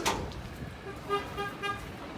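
A sharp knock, then four short, quick vehicle warning beeps, about four a second, over a low background rumble.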